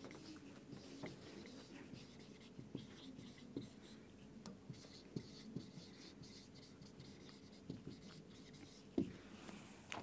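Marker pen writing on a whiteboard: faint, scattered short strokes and small ticks, with a slightly louder tick near the end.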